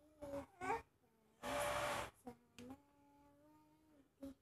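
A toddler babbling: a few short vocal sounds, a loud breathy burst about halfway through, then one long held humming note near the end.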